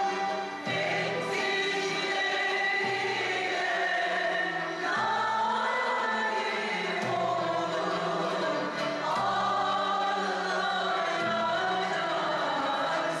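A Turkish classical music choir singing a song in makam karcığar, accompanied by violins. The music runs steadily, the sung phrases shifting pitch every second or so.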